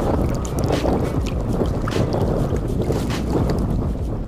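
Wind buffeting the microphone in a steady rumble, over water sloshing and splashing around a big carp lying in a landing net, with a few short sharp splashes.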